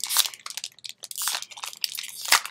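Foil wrapper of a Pokémon trading-card booster pack crinkling in the hands as it is handled to be opened: a rapid run of irregular crackles.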